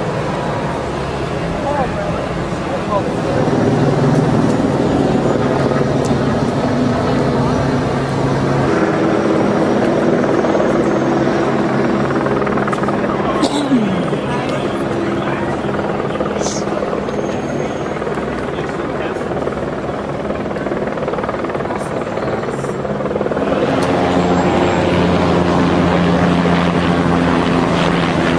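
Steady drone of a hovering helicopter, mixed with indistinct voices, the drone's pitch pattern shifting a couple of times.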